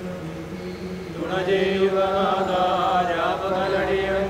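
A single voice begins an Orthodox liturgical chant about a second in, sung in long held notes over a steady low hum.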